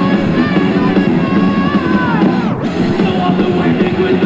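Live heavy metal band playing loud and full, with high melodic lines sliding down in pitch over the band.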